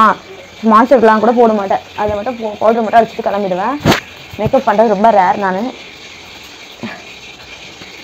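A woman talking, with a single sharp click about four seconds in. Her talk stops near six seconds, leaving a faint steady hiss.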